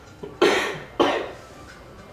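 A person coughing twice, about half a second apart, each cough sharp at the start and fading quickly.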